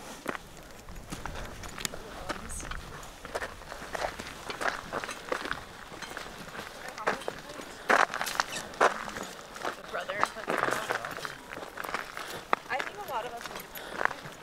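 Footsteps on a loose, rocky mountain trail, irregular steps with stones shifting underfoot, and voices now and then in the background.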